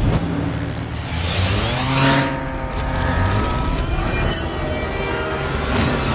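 Film sound effects played backwards: a small twin-engine propeller plane's engine drone, its pitch sweeping up and back down about two seconds in, over a deep, continuous rumble.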